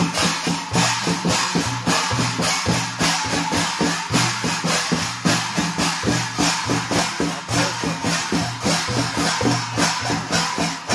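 Two-headed barrel drums (madal) played by hand in a fast, steady festival dance rhythm, with a bright jangling rattle over the beat.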